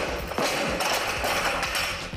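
Loaded barbell with bumper plates dropped onto the lifting platform after a completed jerk, the plates and bar clattering and rattling for about two seconds.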